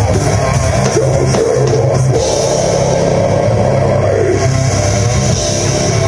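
Live heavy rock band playing loud: electric guitar, bass guitar and drum kit through a venue PA.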